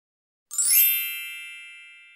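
A single bright, bell-like chime sting that starts about half a second in with a quick rising shimmer, then rings out and fades slowly.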